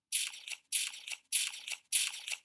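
Four short scratchy, hissing strokes about 0.6 s apart: a cartoon sound effect while the puzzle picture is wiped and redrawn.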